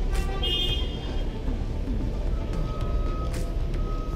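Street traffic ambience: a steady low engine rumble, with a brief high-pitched tone about half a second in and a faint thin steady tone in the second half.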